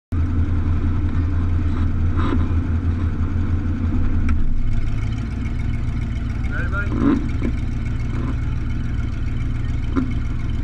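Demolition derby car's engine idling, heard from inside the car, its low steady note shifting about four seconds in. A voice is heard briefly about seven seconds in.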